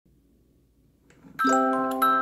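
A hand-cranked 30-note paper-strip music box kit, its steel comb plucked by the punched strip. Near silence for the first second, then about one and a half seconds in a chord of several bell-like notes rings out together and fades slowly, with one higher note added a moment later.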